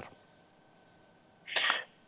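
Near silence for about a second and a half, then a short breathy burst near the end: a man's quick intake of breath just before he starts to speak.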